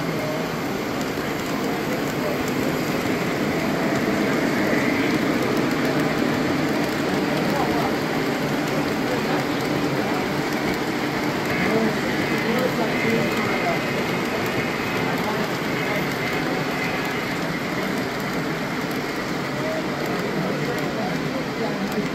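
Three-rail O gauge model train rolling past on the layout: a steady noise of wheels running on track, a little louder in the middle as the cars pass close, with people's chatter in the background.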